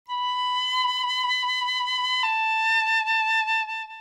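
The smaller of two musical instruments playing two long, steady high notes, the second a little lower, with the change about halfway through. Its higher pitch is the sign of the smaller instrument.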